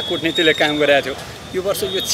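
A man speaking Nepali to reporters at close microphone range. A faint, thin high-pitched tone sits behind the voice during the first second.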